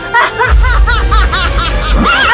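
A young man's villainous laughter in a rapid run of short 'ha' bursts, about six a second, over music. A deep bass comes in about half a second in.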